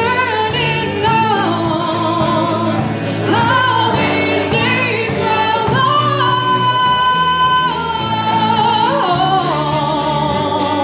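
Live folk-rock band playing: a woman sings long held notes over acoustic guitar, electric bass and a drum kit keeping a steady beat on the cymbals.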